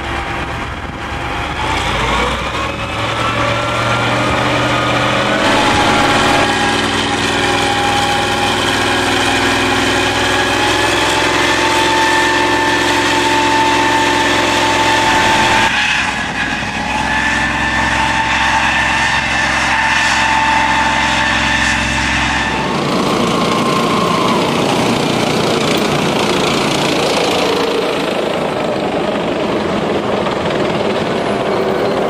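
Engine of a small tracked vehicle with a dozer blade running steadily under load, with a high whine over the engine note. The pitch holds steady, then jumps at a few sudden changes. Over the last several seconds it gives way to a broader, rushing vehicle noise.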